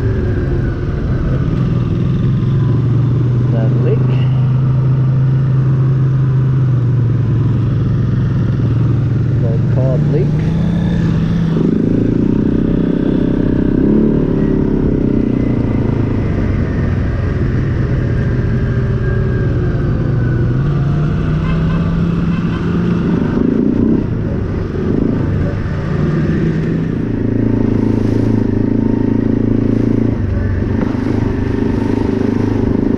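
ATV engine running under way at a steady cruise, its pitch stepping up and down a few times as the rider changes speed, with a brief easing off a little past two-thirds of the way through.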